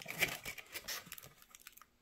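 Irregular crackling and rustling with scattered small clicks, loudest just after the start and thinning out: a hand handling and turning a cocktail glass rimmed with chocolate and crushed cookie.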